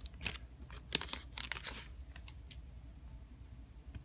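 A foil Pokémon booster pack wrapper crinkling and being torn open, a cluster of sharp crackles and a short rustling tear in the first two seconds, followed by a few faint ticks as the cards are handled.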